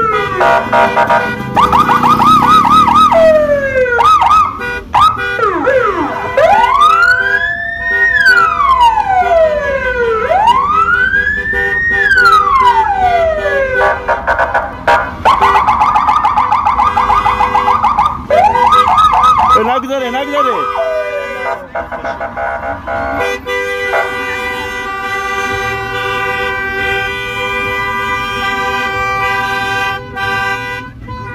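Electronic car sirens cycling through their patterns: fast yelping warbles, then long wails that rise and fall, then fast yelps again. From a little past the middle they give way to a steady held tone, like a car horn.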